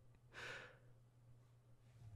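A man's single short breath, audible about half a second in, then near silence with a faint steady low hum.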